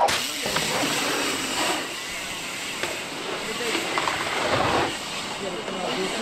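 Steady rushing noise of a mountain bike's tyres rolling down a wooden drop-in ramp and along the dirt track, starting suddenly and a little louder in the first two seconds.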